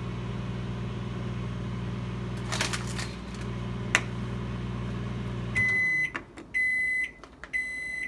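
Microwave oven running with a steady hum, which cuts off about five and a half seconds in, followed by three evenly spaced beeps signalling that the cooking cycle has finished. Two light clicks from a plastic food container being handled come earlier.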